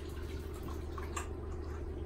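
Water dripping and trickling in a baby bath as it is poured over a newborn's head, a few small splashes around the middle. A steady low hum runs underneath.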